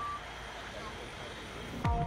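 Outdoor street noise with faint crowd voices and one short high electronic beep at the start, typical of a tow truck's reversing alarm. Electronic music with deep bass hits that fall in pitch cuts in suddenly near the end.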